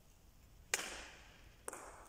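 Badminton racket striking a shuttlecock, a sharp smack about three quarters of a second in that rings on in the sports hall, followed about a second later by a second, shorter smack.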